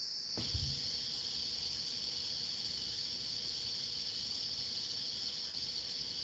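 A steady, high-pitched electronic hiss with a faint constant hum under it: the background noise of a video-call recording, with no one speaking. A short, low thud comes about half a second in.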